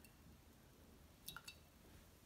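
Near silence of room tone, with two faint short clinks of a small hard object about a second and a quarter in, a fifth of a second apart.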